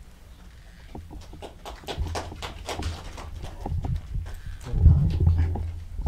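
A run of irregular sharp clicks and knocks, several a second, with low thumps that build to their loudest about five seconds in.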